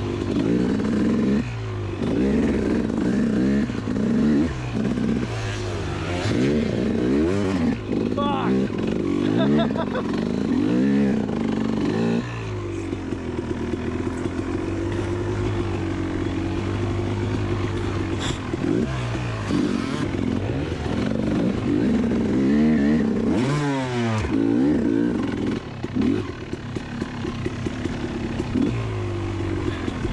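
KTM two-stroke dirt bike engine under way on a snowy trail, its pitch rising and falling as the throttle is worked on and off.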